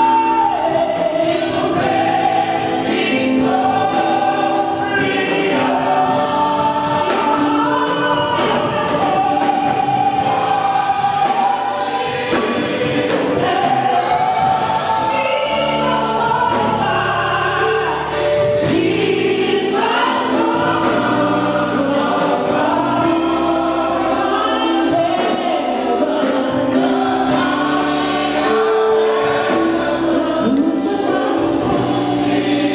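Gospel praise and worship singing: a church congregation singing a song together, led by a woman singing into a microphone, with musical accompaniment. The song runs on steadily without a pause.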